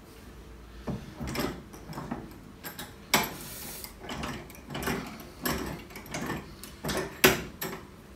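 Hand plane taking about ten quick strokes along the edge of a wooden board, starting about a second in. Each stroke is a short rasping shave of the blade through the wood.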